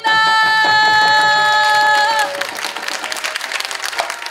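Audience applause, many hands clapping, after a group bow. Over the first two seconds a single high pitch is held steady above the clapping, then it falls away and the clapping goes on alone.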